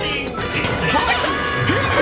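Several cartoon soundtracks playing over one another: background music mixed with crash and smash sound effects.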